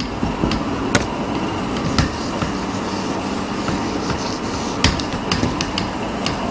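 Whiteboard marker writing: a few sharp taps of the pen tip on the board about one, two and nearly five seconds in, over steady room noise.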